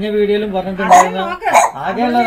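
A woman talking in a lively voice, broken by two short sharp vocal bursts near the middle.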